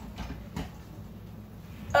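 Faint handling sounds: a soft knock about half a second in as the stainless steel inner pot is lifted out of the Instant Pot cooker with a towel, over a low room hum.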